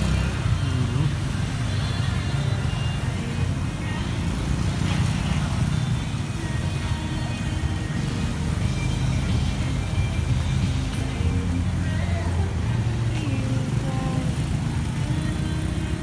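Road traffic on a busy town street: motorcycles and cars passing, a steady deep rumble with no sharp breaks.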